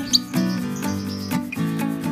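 Background music of plucked-string notes with an even beat. Just after the start, a single short, high, rising chirp from a lovebird is the loudest sound.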